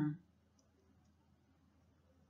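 The last syllable of a voice-over narration ending right at the start, then near silence: faint room tone.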